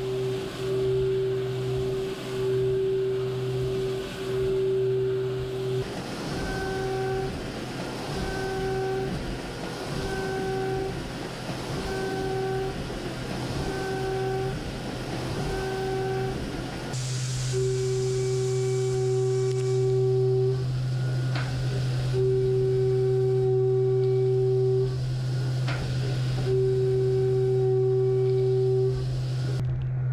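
A 5/8-inch end mill roughing 6061 aluminum on a Mori Seiki horizontal machining center under flood coolant. A steady low hum runs under a higher cutting tone that comes and goes about once a second as the cutter enters and leaves the material, then holds for stretches of about three seconds in the second half. The coolant spray hisses throughout.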